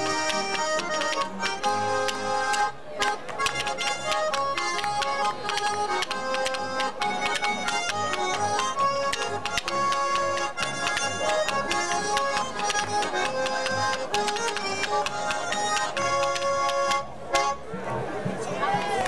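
Swiss folk band playing a lively polka: Schwyzerörgeli button accordions carry the melody over an oom-pah double bass and guitar beat, with clicking spoons keeping time. A brief break and a sharp accent come near the end.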